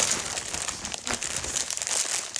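A plastic shopping bag and a plastic packet of dried pasta crinkling and rustling as they are handled, a busy run of quick crackles.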